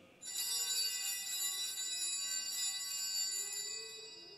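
Altar bells (Sanctus bells) rung at the elevation of the chalice after the consecration, shaken steadily for about three and a half seconds and then dying away near the end.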